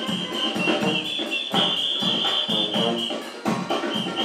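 Brass band playing live with a steady drum beat, sousaphone in the ensemble.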